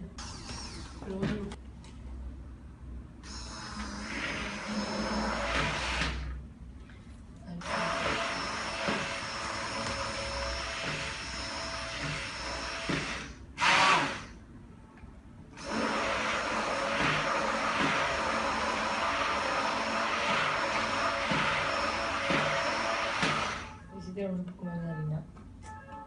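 Electric stick blender (hand immersion blender) mixing pancake batter in a tall beaker, its motor running steadily in three long runs of several seconds each, with a short, louder burst between the second and third.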